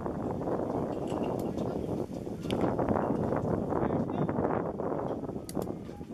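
Indistinct chatter of baseball spectators, many voices blending with no words standing out, with a few sharp clicks about two and a half seconds in and again near the end.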